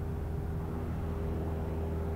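Cessna 172 Skyhawk's piston engine and propeller running at a steady cruise drone, heard from inside the cabin.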